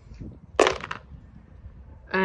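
Several dice tossed into a shallow box, clattering once, briefly, about half a second in.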